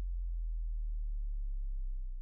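Deep, steady electronic low tone of an intro logo sound effect, a hum with faint overtones; the higher overtones die away about half a second in.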